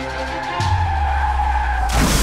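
Tyre-screech sound effect: a sustained squeal with a deep rumble joining about half a second in.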